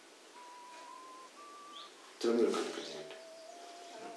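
A few faint, long whistle-like notes, each about a second, stepping from one pitch to the next. About two seconds in, a short burst of voice breaks in.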